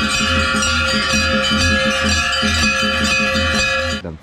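Many hanging brass temple bells rung by hand together, ringing continuously, with a low beat underneath about three times a second.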